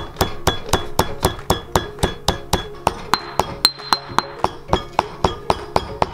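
Stone pestle pounding whole dried spices in a stone mortar, a steady rhythm of sharp knocks about four a second, grinding the seeds down to powder.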